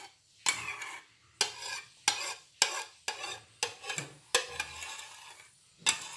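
A spoon scraping thick chocolate sauce out of a bowl onto a cake, in about eight quick strokes roughly half a second apart, each a sharp scrape against the bowl trailing off into a softer smear.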